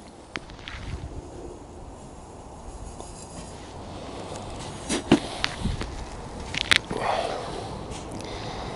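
Granular bonsai soil being dropped into and spread around a ceramic bonsai pot by hand, with a few sharp clicks and a brief rustle near the end over a faint steady background.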